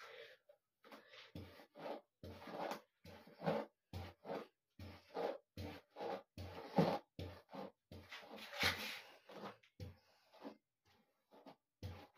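Comb strokes through long wet hair: quick, faint rustling strokes, about two a second, each with a light thump.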